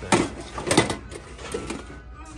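Tin Coca-Cola toolbox being folded open and shut by hand: its thin sheet-metal sides clank against each other and the metal shelf. There is a sharp clank just after the start, a louder doubled clank a little before the one-second mark, and a lighter one about one and a half seconds in.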